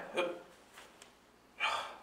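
A man's voice: a short spoken syllable at the start, then a short breathy exhale about a second and a half in, with a faint click about a second in.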